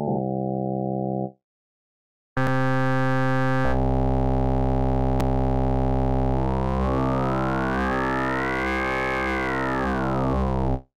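A held synthesizer note from UVI Falcon's wavetable oscillator with phase distortion applied, rich in harmonics. It cuts off about a second in and starts again after a short gap, and its tone shifts a little later. Over the second half a resonant peak sweeps up in pitch and back down as the phase-distortion amount is raised and lowered.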